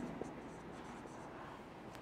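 Faint scratching of a marker pen writing a word on a whiteboard.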